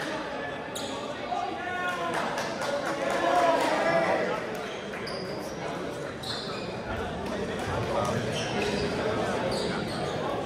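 Voices and chatter in a large gymnasium during a basketball game, with a ball bouncing on the hardwood court and several short, high sneaker squeaks in the second half.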